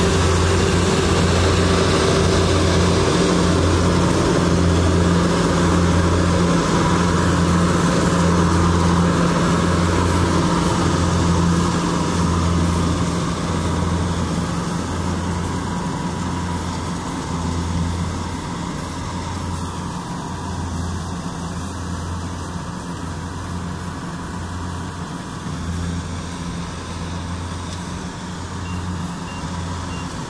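Kubota DC-70G Plus combine harvester running under load as it cuts rice: a steady diesel drone with a regular low pulsing about once a second. The sound grows fainter from about twelve seconds in as the harvester moves away.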